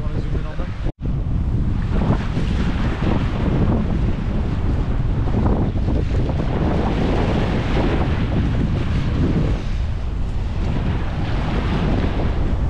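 Wind buffeting the camera microphone in a steady, heavy rumble, with waves washing in behind it. The sound drops out for an instant about a second in.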